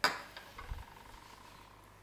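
A metal spoon set down on a dish: one sharp clink right at the start that rings on for over a second, followed by a dull low thump a little under a second in.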